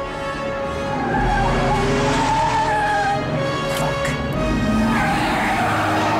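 Tense film score music over a car being driven hard, with tires squealing as it swerves.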